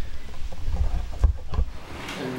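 A low, uneven rumble with a few soft knocks.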